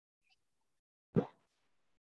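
Near silence, broken about a second in by a single short pop.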